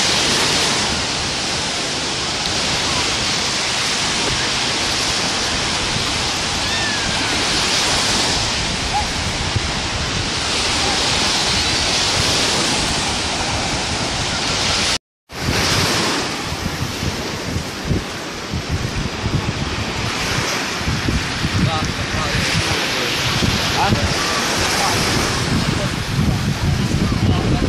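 Small sea waves breaking and washing up a sandy shore: a steady surf hiss that swells every few seconds. After a brief cut about halfway through, wind buffets the microphone with a gusty rumble over the surf.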